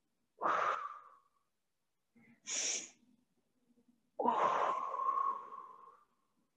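A woman's breathing while she holds a yoga stretch: a short breath out, a quick sharp breath in, then a long breath out that fades away near the end.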